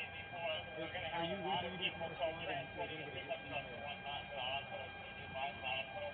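Indistinct voices talking in the background, no words clear, with a faint steady whine underneath.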